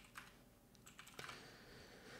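Faint keystrokes on a computer keyboard: a few scattered clicks of typing.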